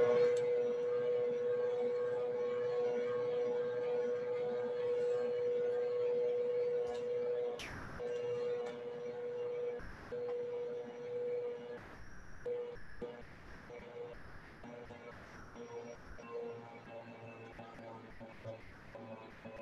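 Electric dough mixer's motor running with a steady hum while kneading challah dough; there is one sharp knock about eight seconds in, and in the second half the hum becomes fainter and uneven as flour is poured into the bowl.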